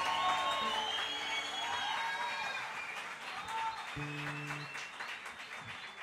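Audience applauding as a song ends, dying down gradually, while an acoustic guitar rings out a few scattered notes.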